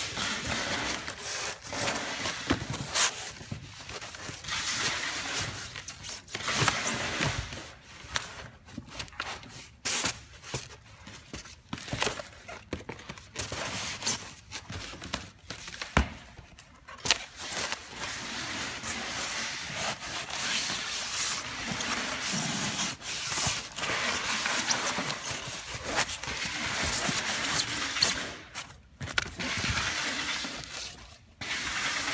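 Cardboard box flaps and foam padding being handled around a packed barber chair: irregular rubbing, scraping and rustling, with a sharp knock about halfway through.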